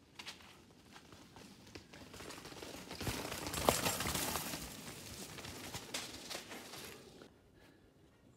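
Mountain bike riding down a rocky dirt trail and passing close by: tyres crunching over dirt and rock, with clicks and knocks from the bike jolting over the rocks. It grows louder, is loudest about three to four seconds in as the bike goes past, then fades.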